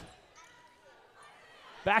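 Faint sound of basketball play on a hardwood court, with the ball bouncing, heard low under the arena's ambience.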